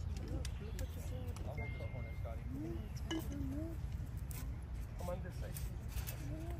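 Faint, indistinct voices of people talking, with a few light clicks, over a steady low rumble.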